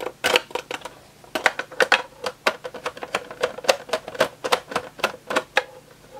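Screwdriver working a screw out of a metal insert in the plastic oscilloscope case, making a run of sharp, irregular clicks, about three to four a second.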